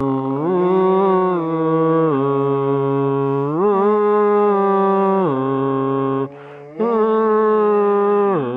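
A person's voice making long, low, drawn-out moaning notes that slide up and down in pitch, with one short break a little past six seconds in.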